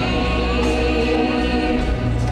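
Live worship band playing a contemporary Christian song, drums, guitars, bass and keyboard under sung vocals holding long notes.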